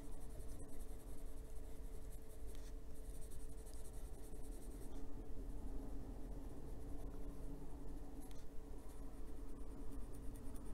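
Polychromos warm grey coloured pencil scratching on paper in small back-and-forth shading strokes, blending over earlier ink lines, with a faint steady hum underneath.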